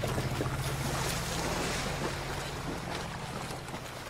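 Water splashing and churning as two people run and wade through a shallow river, over a steady low tone that fades away.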